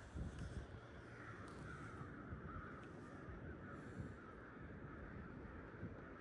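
Faint bird calls over a low, steady rumble.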